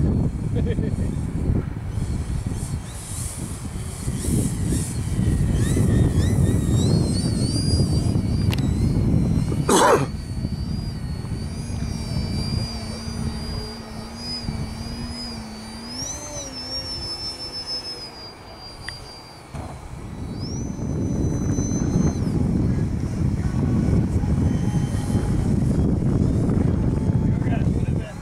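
Wind buffeting the microphone in gusts, with the high whine of a radio-controlled model airplane's motor and propeller overhead, rising and falling in pitch with the throttle through the middle stretch. A sharp knock comes about ten seconds in.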